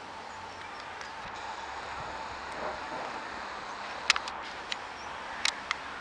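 Steady outdoor background noise with a few short, sharp clicks or knocks in the second half: a pair about four seconds in, one a little later, and two more near the end.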